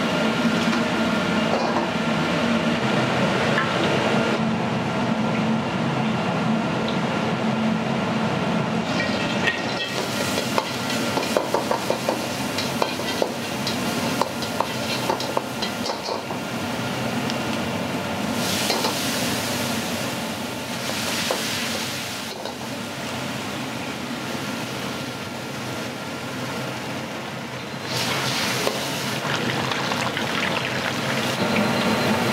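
Restaurant wok station: a lit wok burner running steadily while food deep-fries in a wok of oil. For several seconds in the middle, a metal ladle clacks repeatedly against the wok as a sauce is stirred. Later there are bursts of louder sizzling.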